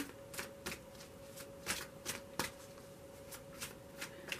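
A deck of tarot cards being shuffled by hand: soft, irregular card snaps, about a dozen over a few seconds.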